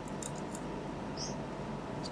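Faint sounds of a person eating: a few soft clicks of chewing early on and a brief high squeak a little after a second in, over a steady low room hum.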